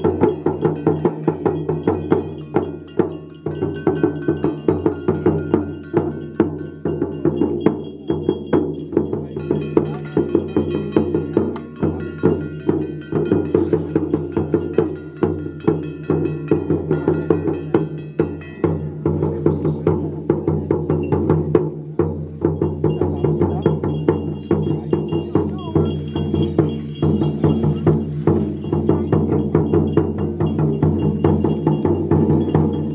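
Ritual percussion of the Dao ordination ceremony: a drum with ringing metal bells and cymbals struck together in a fast, steady rhythm of several strokes a second.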